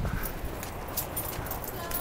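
Footsteps on a dirt footpath, with scattered light crunches and rustles of brush.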